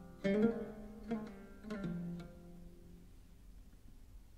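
Solo oud improvisation (taqsim in maqam Rast): a handful of plucked notes in the first two seconds, each ringing out and fading into a pause.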